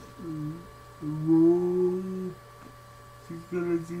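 A man's voice giving a short closed-mouth "mm", then a held, level hum of a little over a second, over a faint steady electrical hum; he starts to speak near the end.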